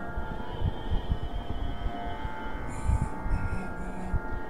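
A steady, unchanging pitched drone that holds one chord of several tones, the kind used to accompany Carnatic singing practice. Irregular low thuds and rumble from the call microphone sound along with it.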